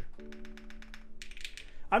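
Fast typing on an Extreme75 mechanical keyboard with KTT Strawberry linear switches and GMK Black Lotus keycaps: a quick run of soft keystroke clacks that stops just before the end. A faint steady held tone sounds underneath.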